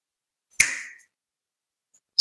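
A single short, sharp click or smack about half a second in, fading out within half a second; otherwise silence.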